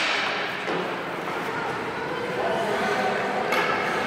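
Indistinct voices echoing in a large indoor ice arena, with skate blades scraping the ice at the start and again near the end.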